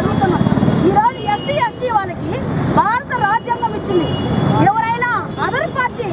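Speech: a woman speaking Telugu continuously into reporters' microphones, over a low rumble of street noise.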